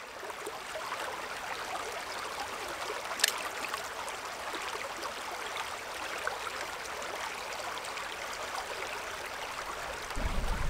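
Shallow, clear stream running over pebbles and stones, a steady babbling rush of water that fades in at the start. One sharp click sounds about three seconds in.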